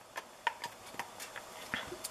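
Faint, irregular clicks and taps of hard plastic parts being handled: the flexible accordion sleeve of a Sink Magic dishwashing gadget being flipped and fitted to its plastic end pieces.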